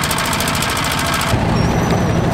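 Single-cylinder diesel engine of a wooden river boat running with a rapid, even knocking beat. About a second and a half in it cuts off suddenly and is replaced by a deeper, steady rumble.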